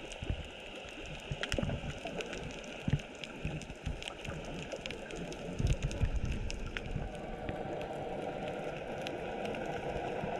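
Underwater ambience picked up by a camera below the surface: a steady watery hiss with scattered sharp clicks and crackles, and low rumbles of water moving around the camera a few times.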